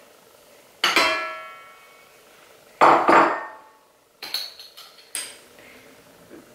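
Stainless steel stand-mixer bowl knocked twice as ingredients are tipped in, each knock ringing and fading over about a second, followed by a few lighter clinks.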